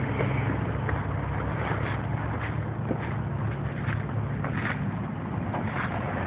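A vehicle engine running steadily as a low hum, with a few faint knocks scattered through.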